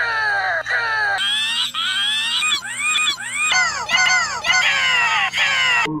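A cartoon voice clip heavily pitch-shifted and warped by stacked audio effects, a short cry-like rising-and-falling phrase repeating about twice a second. The processing changes abruptly a little after one second and again past three seconds.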